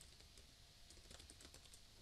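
Very faint computer keyboard typing, a quick run of soft key clicks.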